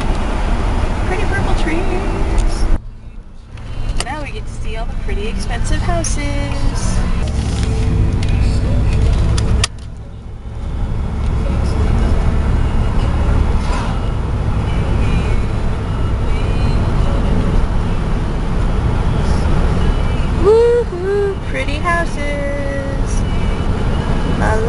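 Inside a moving car: the steady low rumble of engine and tyre noise while driving. It drops away abruptly twice, about three and ten seconds in.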